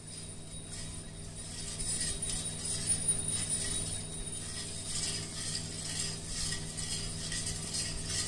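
Metal spoon stirring and scraping against the inside of a steel pot of thick liquid, a continuous scratchy scraping that gets louder about two seconds in.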